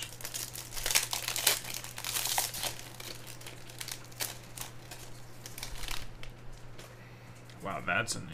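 A Topps Formula 1 trading-card pack's wrapper being torn open and crinkled by hand: a dense run of crackling rustles in the first three seconds, thinning to scattered crinkles after.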